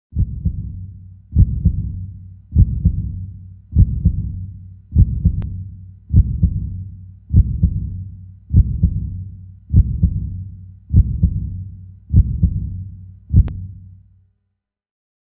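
Slow heartbeat sound effect: deep double thuds, lub-dub, about one beat every 1.2 seconds over a low hum. Two faint sharp clicks come about five seconds in and near the end.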